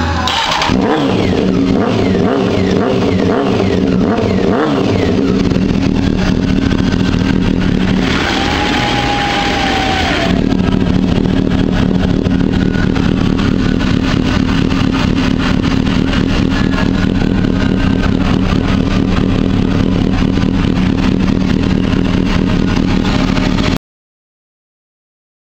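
1999 Honda Hornet 600's inline-four engine running through a Two Brothers Racing aftermarket exhaust. It is revved in the first half, with a louder rev about eight seconds in, then settles to a steady idle until the sound cuts off abruptly near the end.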